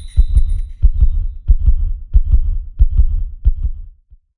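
Deep, heartbeat-like double thumps, a pair about every two-thirds of a second, fading out at the end.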